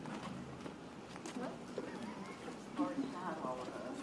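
Low, scattered talk from people near the microphone, with a few hard footsteps as people step up onto the stage; a higher voice speaks briefly about three seconds in.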